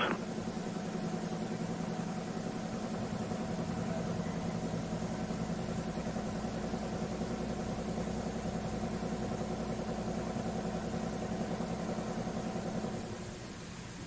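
A steady hum made of several steady tones, holding an even level and dropping slightly about a second before the end.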